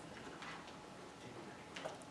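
Quiet room tone with two faint, brief clicks, one about half a second in and one near the end.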